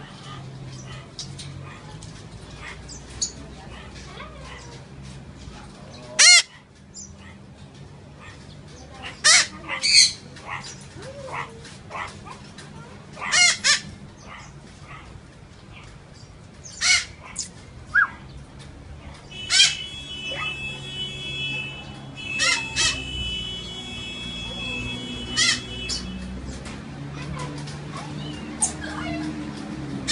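Parrot squawking: about a dozen short, loud, harsh calls scattered every few seconds. A steady high whistle-like tone runs for several seconds in the second half.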